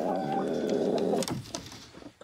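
A chicken giving a low, drawn-out call that lasts just over a second and then stops.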